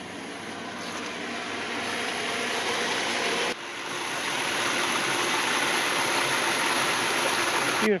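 Steady rush of water flowing across a concrete pool-equipment pad, dipping briefly a little under halfway through and then carrying on.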